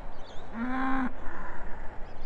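A cow mooing once, a short call of about half a second that scoops slightly upward at the start and then holds its pitch, over steady wind noise.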